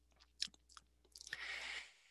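Faint mouth clicks, then a short intake of breath from a speaker pausing between sentences, picked up close on a headset or computer microphone.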